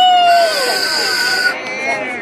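A voice exclaiming with a rising-then-falling pitch, then a whistle blown in one steady note for just over a second.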